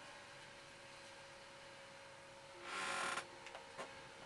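A wide flat watercolour brush dragged across paper: one short scratchy swish about three seconds in, followed by a couple of faint ticks. A faint steady hum runs underneath.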